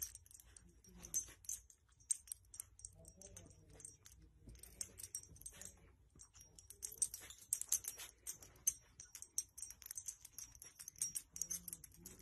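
Faint rustling with many small irregular clicks, from a small dog nosing and snuffling among a baby's blankets; it grows a little busier later on.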